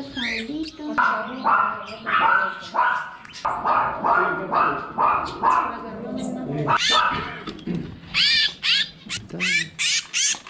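A dog barking repeatedly, about two barks a second, then quick high chirping calls from caged wild birds over the last few seconds.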